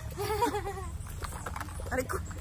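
A woman's short, wavering laugh, with a few brief voice sounds after it, over a low steady rumble.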